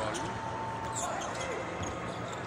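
A basketball being dribbled on a hardwood court during live play, with short sharp bounces and a brief squeak about a second in.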